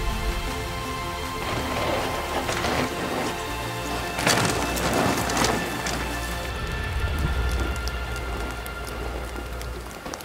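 Background music with sustained tones over hissing sprays of water, like a wet dog shaking itself off. The spray swells twice and is loudest about four to six seconds in.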